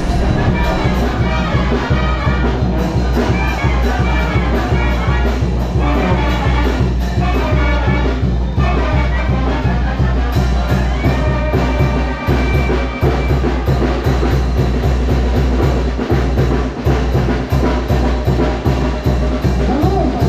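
A Mexican brass band playing lively dance music live: trumpets and trombones over a strong brass bass line, with a bass drum keeping the beat.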